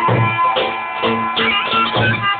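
Zurna (curle) and davul (lodra) playing Albanian folk music: a shrill, ornamented reed melody over deep, regular drum beats.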